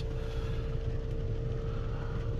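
Vehicle engine idling, heard from inside the cabin: a steady low rumble with a steady hum over it.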